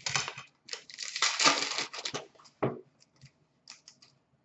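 An Upper Deck SP Authentic hockey card pack being torn open by hand: a ripping crinkle of the wrapper about a second in, then a short knock and a few light clicks of cards being handled.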